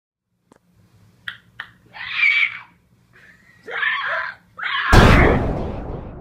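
High-pitched screaming in three bursts after a few faint clicks, the last burst the loudest, starting about five seconds in and fading out slowly.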